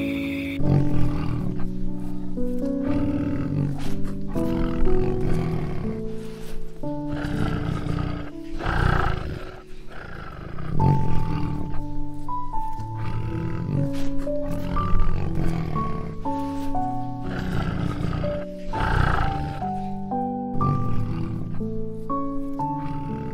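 Background music with a stepped melody over a big cat's growls, which recur about every two seconds and are loudest about nine and nineteen seconds in.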